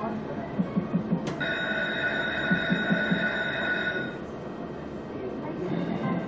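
Fixed-odds slot machine game sounds from the Centurion slot. A sharp hit about a second in is followed by a high, bright ringing chord held for about three seconds, and there are low quick thuds as the reels spin and stop during the power-spin bonus feature.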